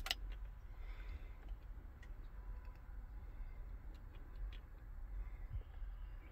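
Quiet, steady low rumble with a few faint, scattered ticks.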